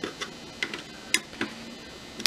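A handful of short, irregular metallic clicks, the loudest just over a second in, from a T15 Torx screwdriver turning screws in the stainless steel inner door panel of a dishwasher.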